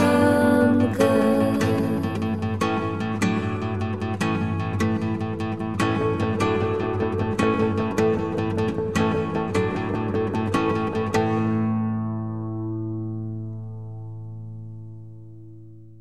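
Instrumental close of a gentle lullaby-style song: acoustic guitar picking notes at a steady pace. About eleven seconds in, the picking stops and a last chord rings on, fading away by the end.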